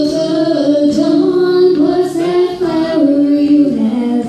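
A young woman singing a country song live over guitar accompaniment, her voice carrying the melody with short breaks between phrases.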